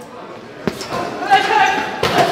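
Boxing gloves striking a Ringside heavy bag, a sharp thud about two-thirds of a second in and more blows in the second half. A person's voice is heard over the later punches.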